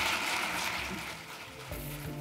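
Audience applauding, the clapping dying down; music starts near the end.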